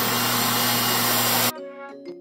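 RevAir reverse-air hair dryer running, a loud, steady rush of air with a low hum from its blower motor as the wand draws hair in. It cuts off suddenly about one and a half seconds in, and light music with chiming notes follows.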